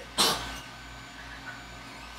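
A single short breathy burst from a man, like a quick huff or exhale, then only a low steady hum.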